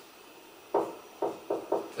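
Four quick knocks of a marker tip striking a whiteboard while writing, the first about three-quarters of a second in and the rest close together over the next second.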